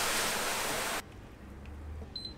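Water poured from a jug into a pan of dry grains, a steady splashing pour that stops suddenly about a second in. After that only a faint low hum remains.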